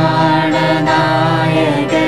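A young man and a girl singing a hymn together, in long held notes that glide between pitches.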